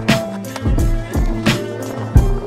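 Background music with a steady beat and held tones, with skateboard sounds on concrete beneath it.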